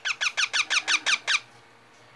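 Young green parakeet giving a rapid run of about nine short, high-pitched calls, each dropping in pitch, that stops after about a second and a half.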